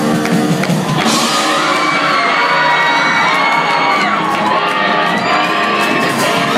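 Live rock band playing loud, drums and electric guitar. From about a second in, shouting and whooping voices cheer over the band.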